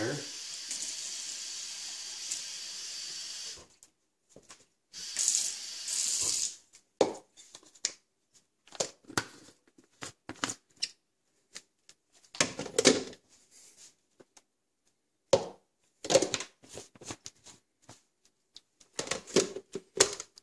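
Water pouring into plastic blender cups of chopped spinach, carrots and celery: one steady pour of about three and a half seconds, then a shorter one about a second later. After that come scattered clicks and knocks of plastic cups and blade lids being handled and fitted onto the blender bases.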